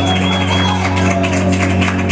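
Salsa music played live on an electronic keyboard: an instrumental passage with a held low chord under a steady percussion beat.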